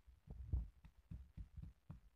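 Stone pestle pounding fresh ginger in a stone mortar: dull thuds, about three or four a second, with one sharper knock near the end.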